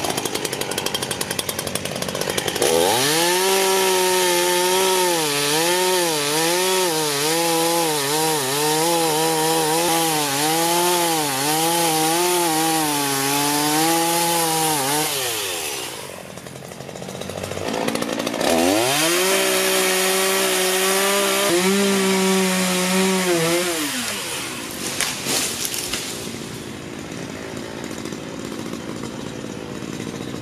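Ryobi 16-inch two-stroke gas chainsaw revving to full throttle and cutting the felling notch in an oak trunk for about twelve seconds, its pitch wavering as the chain bites, then dropping back. It revs up again for a shorter back cut of about five seconds, then falls back to a lower, steadier running for the rest.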